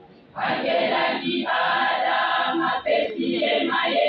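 Women's choir singing together, coming in loud about half a second in after a short quiet moment.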